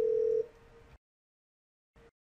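Telephone ringback tone on the calling softphone, a steady tone sounding while the called line rings; it drops away about half a second in and the audio cuts to dead silence about a second in.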